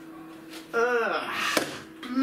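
A man's drawn-out voiced groan of disgust about a second in, followed by one sharp knock as the empty beer can is set down.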